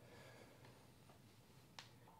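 Near silence: room tone with a faint low hum, and one short faint click near the end.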